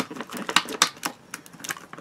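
Irregular quick clicks and crackles of a lipstick kit's packaging being handled as lipstick tubes are worked out of their holder.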